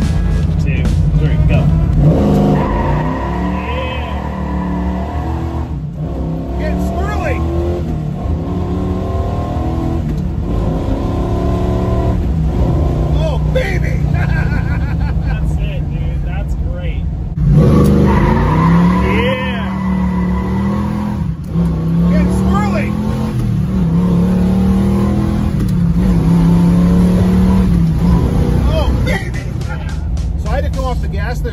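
Chevrolet 396 big-block V8 of a 1967 Camaro SS, heard from inside the cabin, pulling hard under load with its pitch rising and dropping again and again, with tyres squealing. It comes in suddenly louder about 17 seconds in.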